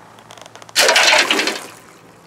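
A wire-mesh basket of hot, freshly baked powder-coated lead bullets tipped over into a pan of water to quench them: a few light rattles, then a loud splash and rush of water starting about three-quarters of a second in and dying away over about a second.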